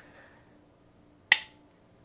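FN 509c Tactical striker-fired pistol dry-fired: a single sharp metallic click of the striker falling as the trigger breaks, a little past halfway.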